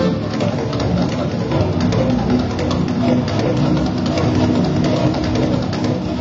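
Live improvised experimental music from a duo: a dense, continuous texture of held low tones under a fast scatter of small clicks and crackles, with no pause.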